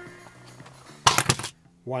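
Music playing faintly through the filter circuit and its loudspeaker at a very low listening level. About a second in, a loud, brief clatter of sharp knocks cuts across it.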